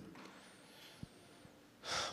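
A quiet pause with faint hiss and one small click about a second in, ending in a man's breath close to a handheld microphone just before he speaks.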